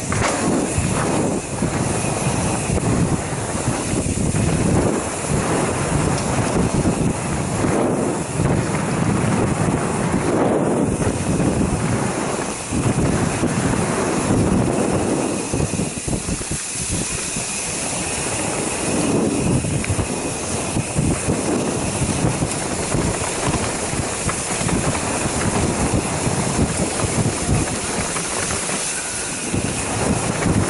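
Mountain bike descending a dirt downhill trail at speed, heard from a camera riding along with it: continuous rattling and knocking of the bike over bumps, tyre noise on dirt and wind rushing over the microphone.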